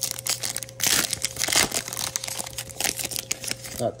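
A trading-card pack's foil wrapper being torn open and crumpled by hand: a dense crackling that is loudest about a second in, over a faint steady hum.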